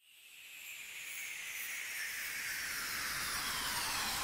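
Opening of an electronic music track: a swelling wash of noise, like a hiss or surf, fades in from silence and grows steadily louder.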